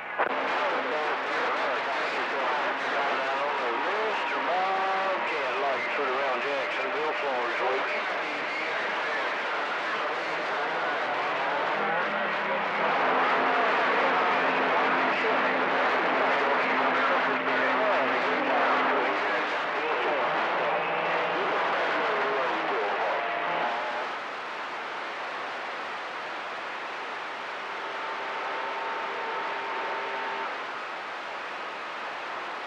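CB radio receiver on channel 28 picking up skip: a constant hiss of static with garbled, overlapping voices that cannot be made out, and steady carrier tones from stations keying up. It drops quieter about four-fifths of the way through.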